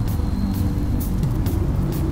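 A deep, steady rumbling drone with music underneath, dotted with a few faint crackles.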